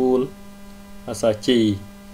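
Steady electrical hum under the recording, with a voice speaking two short phrases, one at the start and one from about a second in.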